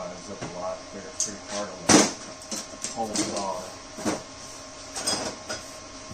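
A voice speaking quietly, broken by several sharp knocks of metal tools or tubing being handled on a steel workbench. The loudest knock comes about two seconds in.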